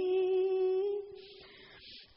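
A woman's voice holding a long, steady note of Khmer smot, the unaccompanied Buddhist chanted verse. The note fades out about a second in, leaving a brief near-silent pause before the next line.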